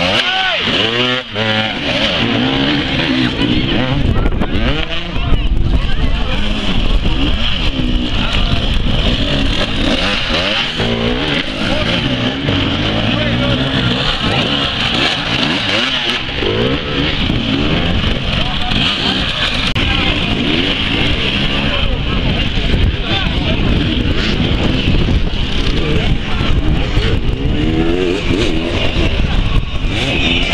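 Several enduro motorcycle engines revving and blipping under load as the bikes climb over log and dirt obstacles, the pitch rising and falling over and over.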